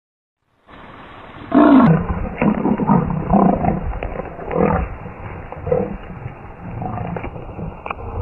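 Leopards fighting: a run of loud, harsh calls, roughly one a second, starting about one and a half seconds in.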